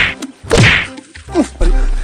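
Slapstick fight hits: three sharp whacks in about a second and a half, the first two close together.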